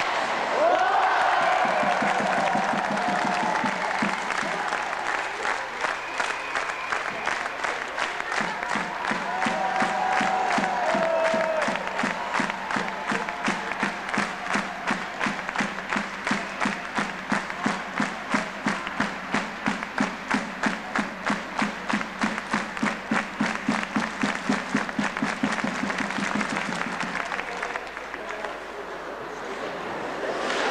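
Ice hockey crowd in a rink, first shouting and cheering, then clapping in unison at a steady beat of about three claps a second. The clapping stops near the end.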